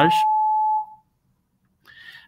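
A steady single-pitched electronic tone, like a beep, runs under the end of a spoken word and cuts off about a second in. Near silence follows.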